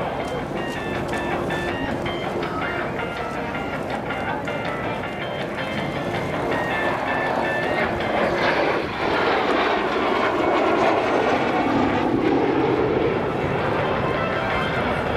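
Jet noise from a Kawasaki T-4 trainer's twin turbofan engines as it flies a display maneuver, swelling louder from about eight seconds in, with a sweeping change in pitch as it passes. Public-address music with short stepped notes plays underneath in the first half.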